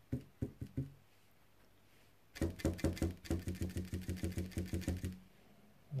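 Stiff brush jabbed repeatedly onto a metal number plate, stippling on glue and rust: a few separate taps at first, a short pause, then a quick even run of taps, about eight a second, for nearly three seconds.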